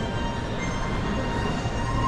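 Steady rumbling ambience of a busy department-store floor, with faint music's held notes over it.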